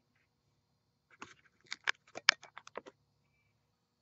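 A quick, irregular run of about a dozen light clicks and taps lasting roughly two seconds, starting about a second in, over a faint low hum.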